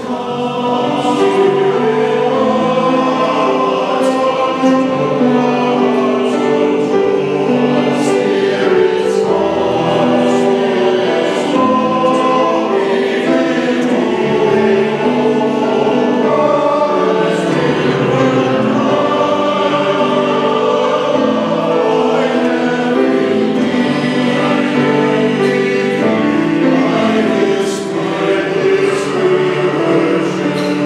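A men's chorus singing a slow sacred choral anthem in a church, many male voices holding sustained notes that change every second or so, with a brief breath between phrases near the end.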